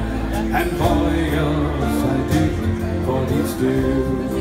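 Live band playing an instrumental passage between sung lines: acoustic and electric guitars with a drum kit keeping the beat.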